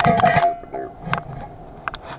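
Metal knocking against the inside of a steel bucket, and the bucket rings briefly with one clear tone. Two lighter knocks follow, about a second in and near the end.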